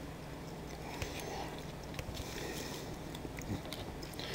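Faint eating sounds: a person chewing a mouthful of food, with a few light clicks of a fork against the plate.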